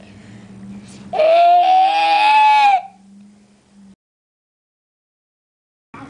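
Baby letting out one long, high-pitched squeal lasting about a second and a half, its pitch rising slightly.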